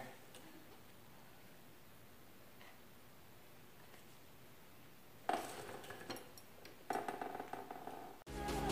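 Quiet room tone, then two scraping strokes of a plastic spreader dragged over epoxy on a boat hull, about five and seven seconds in, each with a squeaky edge.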